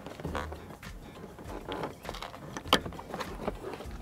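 Light clicks and knocks from a Toyota Voxy's folded third-row seat as it is pushed into place against the side of the cargo area and its clasp is fastened, with one sharper click about two and a half seconds in.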